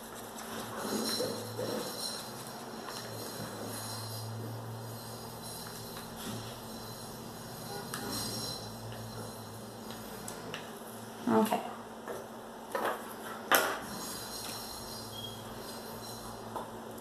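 Wooden craft stick stirring and scraping a thick mix of acrylic paint and Floetrol around a small plastic cup, faintly. Near the end come three sharp knocks from the stick or cup.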